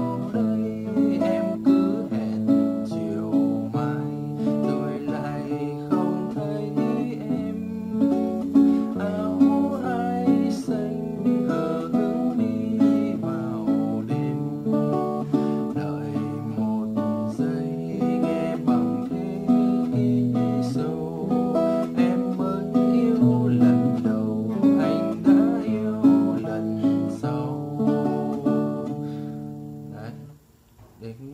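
Acoustic guitar playing a slow bolero accompaniment, fingerpicked: a bass note on each beat followed by plucked chord notes on the upper strings, in a steady repeating rhythm. The chords move through D, F#m, Em and A7.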